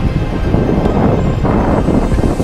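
Wind buffeting the microphone of a camera riding on a moving scooter: a loud, rough, fluttering rumble, with street traffic underneath.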